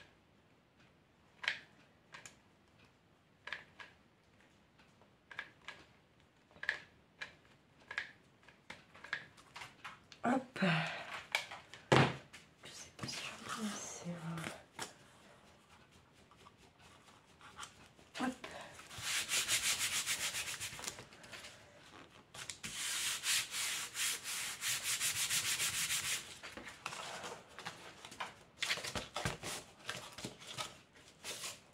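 Light, spaced clicks from a hot glue gun as glue is laid on cardboard, with one sharp knock midway. Then a hand rubs hard over the cardboard strips to press them onto the glue, in two long scraping stretches in the second half.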